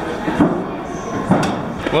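Two sudden thuds about a second apart, over a steady murmur of indistinct voices.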